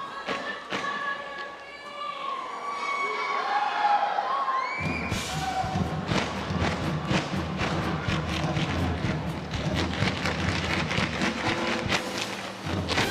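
Audience cheering and whistling. About five seconds in, music starts and a troupe's tap shoes strike the stage in quick, dense beats over it.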